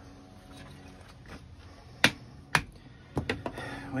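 Sharp clicks and knocks as a knife blade stuck in a split of firewood is twisted and pried loose by hand: two single clicks about halfway through, then a quick run of several more near the end.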